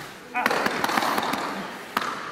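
A small group clapping their hands. It starts suddenly about a third of a second in and eases off near the end.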